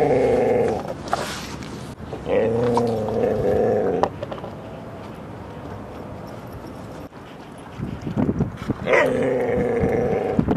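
Siberian husky howling in long, drawn-out calls with a slightly wavering pitch: one ends just under a second in, a second lasts about two seconds, and a third begins near the end.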